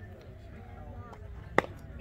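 A single sharp crack of a youth baseball bat striking the pitched ball, about one and a half seconds in, over faint distant voices.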